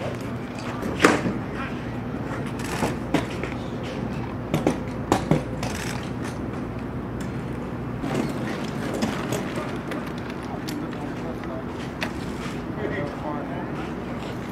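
Outdoor football practice field ambience: faint, indistinct voices over a steady low hum, broken by a handful of sharp short knocks or claps in the first half.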